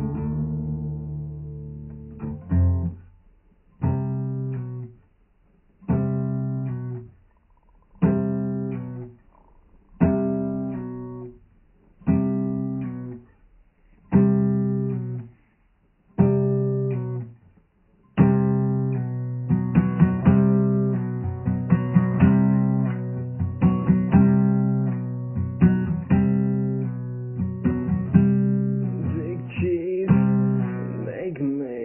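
Music on a plucked string instrument. Single chords are struck about every two seconds and left to ring out. About two-thirds of the way through it turns into a steady, continuous strumming rhythm.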